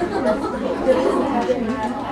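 Several people chattering over one another, with no single clear voice.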